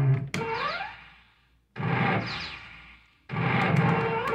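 Electronic sound effects from a pinball-style slot machine: three bursts of synthesised tune, each starting with a sharp click and a quick rising run of tones that fades away, as credits are bet on a new round.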